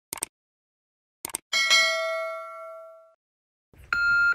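A subscribe-button sound effect: mouse clicks, then a bright bell ding that rings and fades over about a second and a half.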